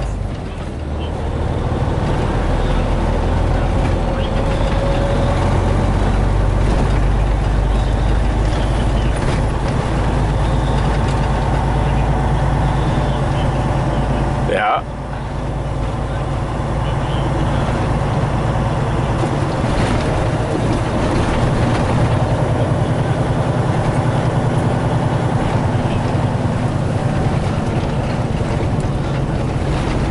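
Semi truck's diesel engine running steadily as heard inside the cab while driving, a loud low drone. About halfway through it breaks off abruptly for a moment, then picks back up.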